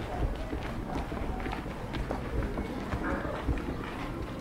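Footsteps on stone paving, with a click about every half second, along with indistinct voices of people walking nearby.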